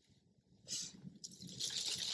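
Dry dead leaves rustling and crackling as a leafy twig is picked up from a bed of fallen leaves. The rustle starts about half a second in and grows louder near the end.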